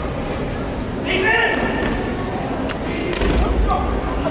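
Echoing sports hall full of many voices and a shout, with a few sharp slaps and thuds in the second half from aikido practitioners being thrown and breakfalling onto the tatami mats.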